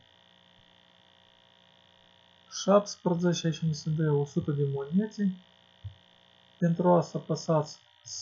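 A man talking in two short stretches, starting about two and a half seconds in and again past six seconds. Beneath the speech, and alone in the pauses, a faint steady electrical hum.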